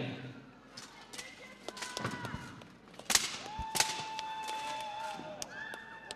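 Steel plate armour clanking and knocking as two armoured fighters grapple in a clinch, with scattered sharp metal impacts; the loudest comes about three seconds in. A voice calls out over it, holding one long shout just after the middle.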